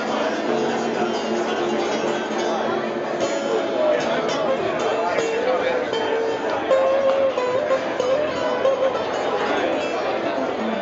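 Guitar music playing over the chatter of a crowd, with long held notes through the middle.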